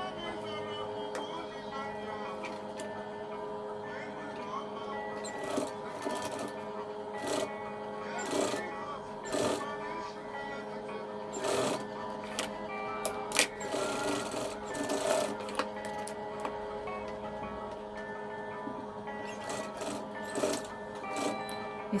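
Industrial lockstitch sewing machine stitching wefts onto a wig cap in short, irregular bursts, with clicks and knocks of handling between runs. Steady background music plays throughout.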